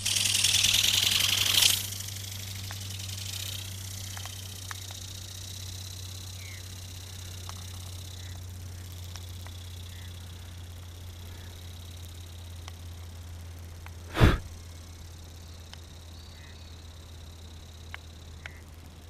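A loud rushing hiss for under two seconds, then a steady low hum under faint hiss, broken by one sharp knock about fourteen seconds in.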